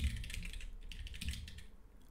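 Computer keyboard keystrokes: a quick, irregular run of light key clicks as keys are tapped to move the cursor and select lines in the Neovim editor.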